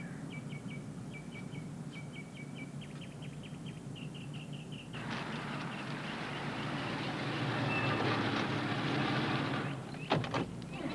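A small bird chirps over and over, short high chirps that come quicker as they go on. About halfway through, a large sedan's engine and tyres come in, growing louder as the car drives up, then cut off just before the end.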